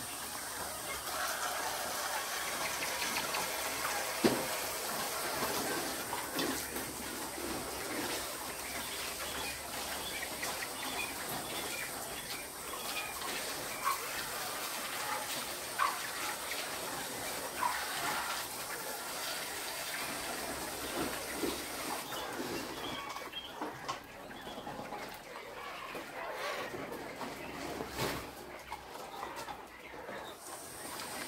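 Many caged quail chirping and calling in short notes, with a few light clicks and rattles from the wire cages. A steady high hiss runs underneath and drops away about two-thirds of the way through.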